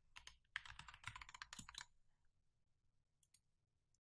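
Faint computer keyboard typing: a quick run of keystrokes over the first two seconds as a password is entered, then a couple of faint clicks about three seconds in.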